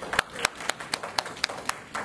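A steady run of sharp claps, evenly spaced at about four a second, stopping shortly before the end.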